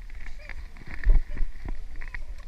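Handling noise: a few irregular knocks and clatters as an AR-style carbine is picked up off a shooting-range bench, the loudest about a second in, over a low rumble of clothing rubbing near the microphone.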